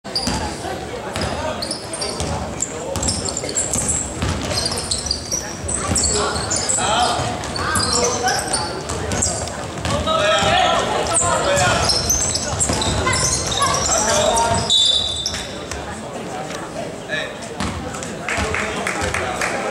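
Basketball being dribbled on a wooden gym floor, with players calling out in the echoing hall; the voices are loudest from about ten seconds in.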